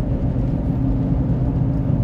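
Steady low rumble with a faint constant hum, like road and engine noise heard inside a moving vehicle.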